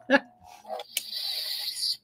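Toy lightsaber sound effect: a click about a second in, then a steady high hissing electronic buzz for about a second that cuts off suddenly.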